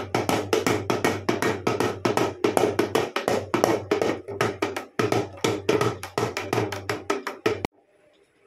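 Dhol beaten in a fast, steady rhythm of about five or six strokes a second over a low steady hum, cutting off abruptly near the end.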